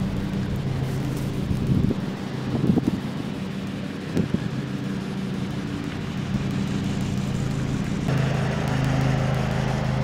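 A steady, low engine hum, as from a motor vehicle running nearby, with a few soft knocks about two to four seconds in.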